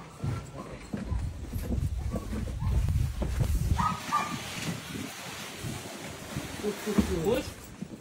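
Hand truck loaded with a tall cardboard-boxed item rumbling and scraping across the wooden floor of a box truck's cargo area, loudest in the first half. Near the end a man strains and shouts "push".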